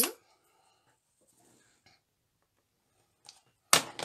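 Quiet room, then a faint tick and, near the end, a single loud, sharp tap.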